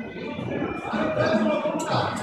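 Music playing, with people's voices talking underneath it.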